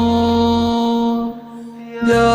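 Song: a long held sung note over a low accompaniment. The bass drops away part way through, the note fades about a second and a half in, and the next phrase begins at the very end.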